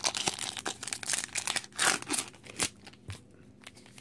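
Foil Pokémon booster pack wrapper crinkling and tearing as it is handled and opened by hand, in irregular crackles with a louder rip a little before two seconds in; it quiets near the end.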